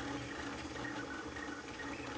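Fast CoreXY 3D printer running mid-print, heard faintly under the voiceover: a steady hiss of its cooling fans with a couple of weak steady tones.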